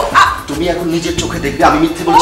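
A woman crying out and wailing in distress, with loud, breaking cries.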